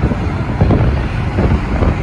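Vehicle road noise on a highway, with wind buffeting the microphone in a dense low rumble.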